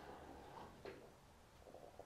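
Near silence: room tone, with one faint sharp click a little under a second in as a small glass shot glass is handled on a table.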